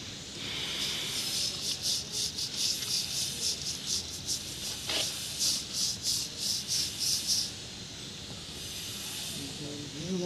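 A stiff hand brush scrubbing fresh washed-aggregate plaster in quick repeated strokes, about three a second, which stop about three quarters of the way through. The scrubbing washes off the cement film to expose the stone chips.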